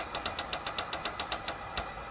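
Rapid, even clicking, about seven clicks a second, from the small tactile temperature-up button on a space heater's bare control circuit board being pressed over and over to raise the set temperature.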